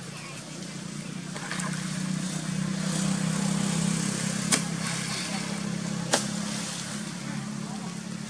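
A motor engine running steadily, swelling louder in the middle and then easing off, with two sharp clicks a second and a half apart.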